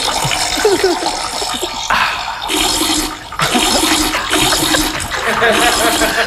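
A steady rushing, hissing water sound, comically standing in for a woman peeing and a toilet flushing. It breaks off briefly about three seconds in.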